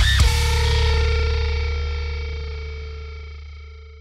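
The song's final distorted electric guitar chord, struck once just after the start and left ringing with a heavy low end, fading steadily as the track ends.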